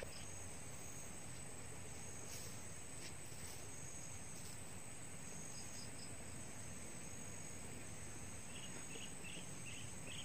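Faint, steady insect chorus with a thin, high-pitched continuous trill, and a few soft chirps near the end.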